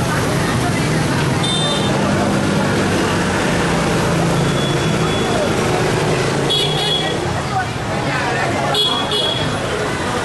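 Dense street traffic of motorbikes and cars running past with a steady engine hum. Short high-pitched horn beeps sound four times: about one and a half seconds in, around five seconds, at six and a half seconds, and near the end.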